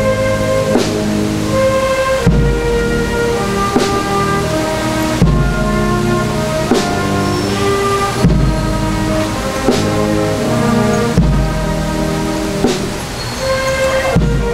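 Military brass band of trombones, French horns and tubas playing a slow march, with a bass drum beat about every one and a half seconds under sustained brass chords.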